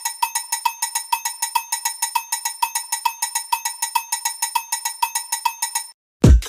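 Title-card sound effect: a fast, even run of short, bright ticks at one pitch, about four or five a second, stopping abruptly just before the end.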